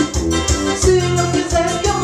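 Forró brega music: a melody played on an electronic keyboard over a steady, rhythmic bass-and-drum beat.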